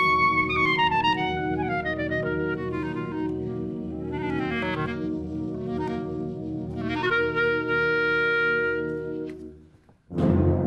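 Solo clarinet playing a free, cadenza-like passage: quick descending runs, sliding pitch bends about four to five seconds in, then a long held note that dies away just before the end. Held low chords from the wind band sound underneath.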